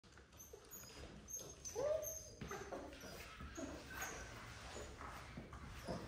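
Faint puppy whimpering: a few short whines, one rising and falling about two seconds in, and brief high squeaks.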